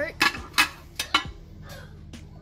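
Metal saucepan knocking and clanking as it is handled, about four sharp knocks in the first second and a half.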